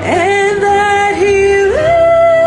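A woman singing, sliding up into a long held note and then stepping up to a higher held note near the end.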